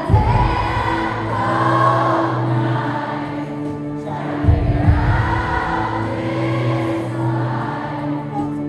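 A live pop-rock ballad played by a band, with singing in long held lines. Heavy band entries come in just after the start and again about halfway through.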